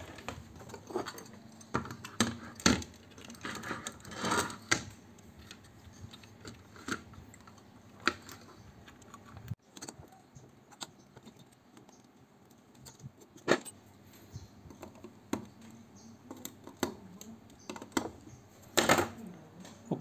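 Scattered small clicks, taps and clatter of hand tools and a component being handled on a workbench while a replacement power MOSFET is fitted into a switch-mode power-supply board. There are a few sharper knocks among them and a brief scrape about four seconds in.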